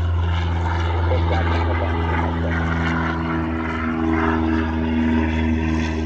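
Boeing 737-700 jet engines on its landing roll: a steady low rumble with a droning hum that rises slightly in pitch after about two seconds.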